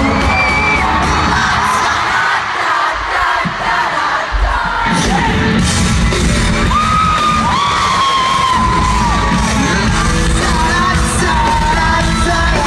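Live rock band playing loud in an arena, sung vocals over electric guitars and drums, picked up by a phone among the crowd. The bass and drums thin out for a couple of seconds and come back in full about five seconds in.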